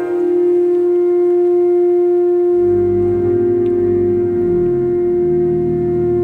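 Church organ holding one long sustained note, with lower bass notes coming in about two and a half seconds in.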